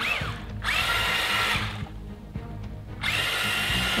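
Small electric motor of a remote-control monster truck whining in bursts as it is throttled: a burst of about a second, a short lull, then it runs again from about three seconds in.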